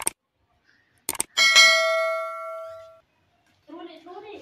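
Mouse clicks followed by a single bright bell ding that rings on for about a second and a half and fades away: the sound effect of a YouTube subscribe-and-bell button animation.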